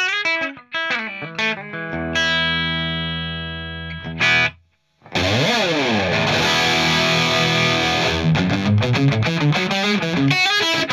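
Overdriven electric guitar through a classic four-input Marshall amp with its High Treble and Normal channels jumped together. Picked single notes lead into a chord left ringing, then a brief stop about four and a half seconds in, a quick slide, and louder driven chords and riffing.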